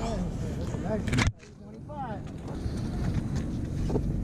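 Faint voices of people talking over a steady low outdoor rumble. The sound drops out abruptly about a second in, then the rumble and voices return.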